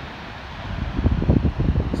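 Wind blowing across the microphone: a steady rush, then irregular low rumbling gusts that grow louder from about half a second in.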